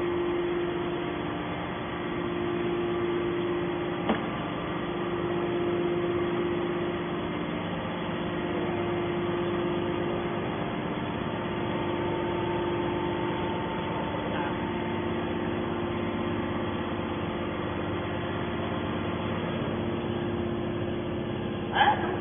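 Hydraulic power unit of a metal scrap baler running steadily at rest, a constant machine hum with a fixed pitch, with one sharp click about four seconds in.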